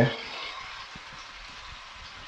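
Diced pork, chorizo, tomato and pepper frying in oil in a pot with a steady sizzle as chopped onion goes in, with a few soft knocks as it lands and is stirred.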